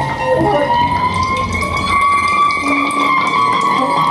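Electroacoustic free-improvised music: one long held tone that slowly bends up in pitch and back down, over a low rumbling drone.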